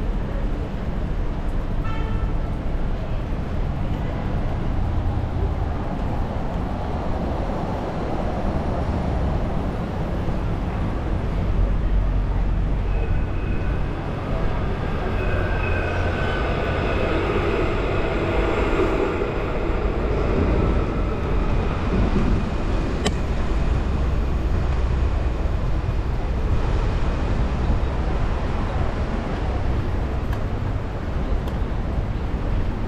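Street traffic rumble with an electric tram passing: its steady whine comes in about a third of the way through and fades out about two-thirds through.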